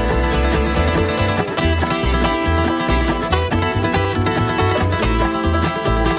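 Bluegrass string band playing an instrumental passage, with an upright bass line of separate low notes under acoustic guitar and other plucked strings.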